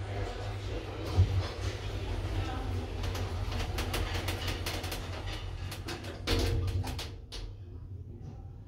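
Sliding doors of a hydraulic passenger elevator closing: a knock about a second in, then a run of clicks and knocks with the loudest about six seconds in as the doors shut, over a steady low hum.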